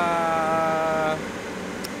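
A man's voice holding one long drawn-out vowel for about a second, its pitch falling slightly, then only steady background noise.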